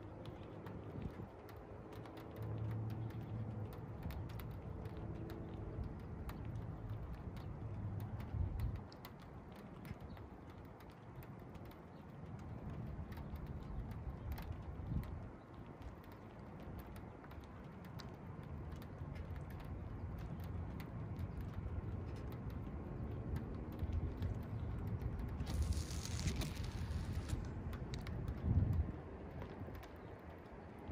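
Thunderstorm ambience in the open: an uneven low rumbling that swells and fades twice, with scattered light ticks and a brief hiss about two-thirds of the way through.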